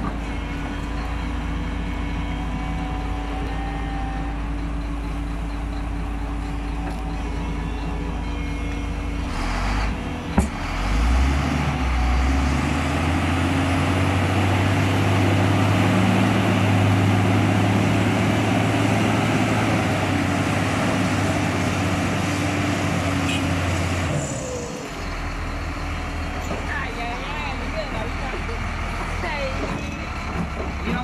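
Heavy diesel engines of an excavator and a mired wheel loader running: steady at first, then about ten seconds in one revs up under load and works hard for about thirteen seconds before dropping back to idle. A single sharp click comes just before the rev-up.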